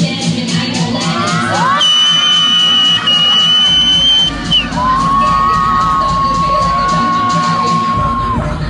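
Dance music with a steady beat playing over a hall's speakers while the audience cheers and shouts. Two long, high-pitched held cries stand out above it, the first about two seconds in, the second, lower one through the second half.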